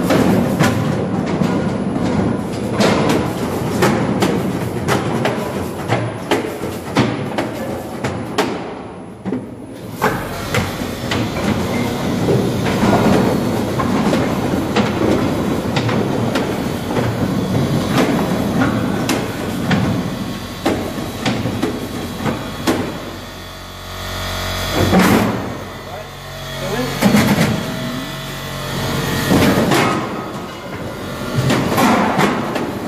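Split firewood pieces clattering down a steel packing chamber into a carton box lined with a steel cartridge: many irregular wooden knocks on metal as the firewood bagging machine fills the box. A low steady machine hum joins about a third of the way in.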